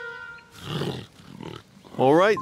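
Cartoon tiger growl sound effect: two rough growls, the first louder, about half a second and a second and a half in, as a music cue dies away.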